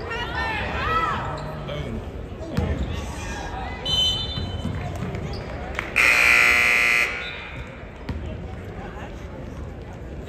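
Basketball arena sounds: sneakers squeaking on the hardwood, a brief referee's whistle about four seconds in, then the scoreboard horn sounding loudly for about a second, stopping play for a substitution.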